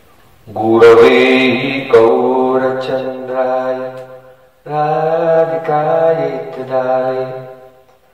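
A man's voice chanting a mantra solo, holding long steady notes in two phrases with a short break about halfway through.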